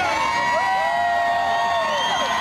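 Large arena crowd cheering and shouting, with many voices overlapping and several long, held whoops.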